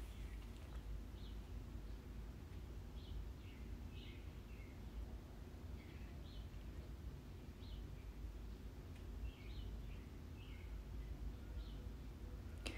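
Quiet room tone with a steady low hum and short, faint high chirps scattered through it, about one a second.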